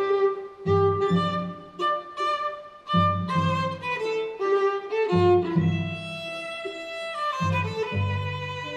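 A string trio, two violin-family instruments and a cello, playing a classical piece live. The cello's low notes come in short phrases that drop out and restart about every two seconds, under a sustained bowed melody.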